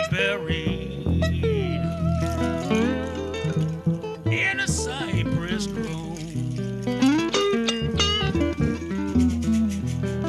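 Blues band playing an instrumental passage between verses: resonator and electric guitars, with notes that glide up and down like slide guitar, over a steady upright bass line.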